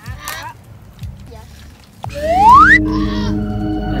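A single pitch sliding upward for most of a second, about two seconds in and the loudest sound here, like an edited-in whoop or slide-whistle effect. It leads into steady background music of held notes.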